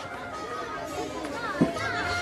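Low background chatter of a gathered crowd of guests, with young girls' and children's voices mixed in and no single speaker standing out; a brief thump about a second and a half in.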